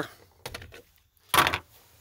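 Light plastic clicks, then one sharper clack a little past halfway, from handling the fuse panel's plastic cover.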